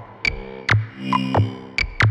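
Minimal dark electronic music: sharp synthesized hits about twice a second, each dropping quickly in pitch, over a low throbbing bass pulse and faint held synth tones.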